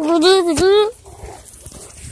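A boy's voice making a drawn-out, wavering wordless sound that lasts about a second and glides up in pitch at the end, followed by faint outdoor background.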